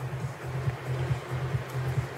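A steady low hum with rough handling noise, and a few light clicks near the end as the plastic light housing is moved in the hand.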